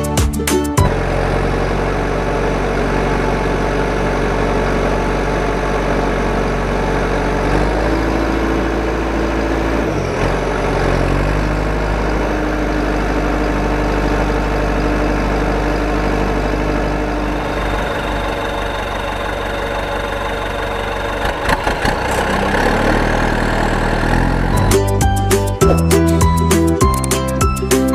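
Tractor-style engine sound running steadily as the toy tractor drives, its pitch stepping a few times, about 8, 10 and 12 seconds in. Background music plays briefly at the start and returns near the end.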